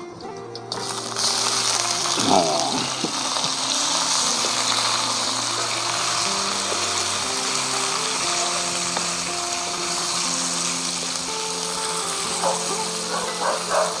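Pieces of pekasam (fermented fish) sizzling in hot oil in a wok with frying onions; the sizzle starts as the fish goes in about a second in and then runs on steadily. Background music plays alongside.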